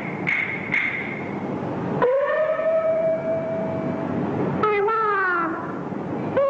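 Peking opera music: a couple of percussion strikes in the first second, then a sharp attack about two seconds in that opens a long held note, followed near the end by a run of falling pitched slides.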